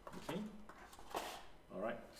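Short bits of a man's speech, with a brief crackle of a thin clear plastic protective cover being pulled off a Wi-Fi access point about a second in.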